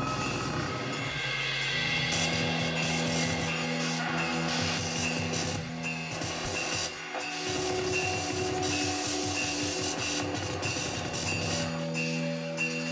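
Live free-improvised music on electric guitar and electronics: a low held drone note comes in about a second and a half in and sustains, with a grainy, scraping noise texture above it.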